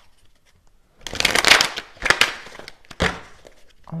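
A deck of oracle cards being shuffled by hand. A long burst of shuffling starts about a second in, followed by two shorter ones.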